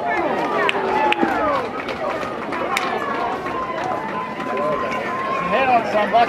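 Baseball spectators chattering and calling out, many voices overlapping with no clear words, and a long steady high note running through the middle.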